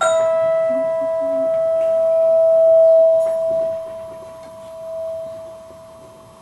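A single bell-like metal note is struck once and keeps ringing. The higher overtones die away within about two seconds. The main tone swells to its loudest about three seconds in, fades, and swells once more near the end.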